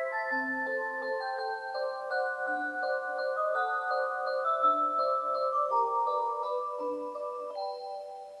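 Rhythm Small World Magic Motion wall clock playing one of its built-in electronic melodies: a tune of clean, held chime-like notes over a low bass note about every two seconds.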